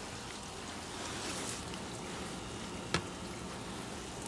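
Soft-bristle brush scrubbing a bleach solution onto a stucco wall, a steady hiss, with one sharp click about three seconds in.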